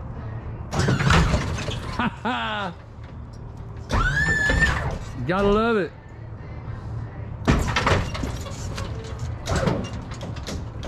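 Oldsmobile Cutlass lowrider's hydraulic suspension working: short bursts of pump and valve noise as the car's front is raised, with people whooping and laughing between them.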